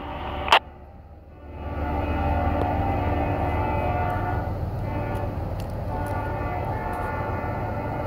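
Diesel locomotive horn (CSX GE ES40DC) sounding one long steady chord for the crossing, starting about a second and a half in, over the low rumble of the approaching train. A short sharp click comes about half a second in.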